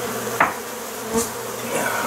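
Honey bees buzzing steadily as a disturbed colony pours out of an opened wall cavity; the bees are agitated and defensive. Sharp cracks of a sheetrock panel being pried off the wall come about half a second in and again just after a second.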